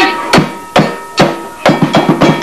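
Hand-struck frame drums beating a slow, even pulse of single strokes, a little over two a second, quickening into a faster rhythm near the end.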